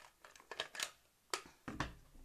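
A clear rubber stamp and its stamp block handled at a craft table: a few light clicks and taps, the sharpest about a second and a half in.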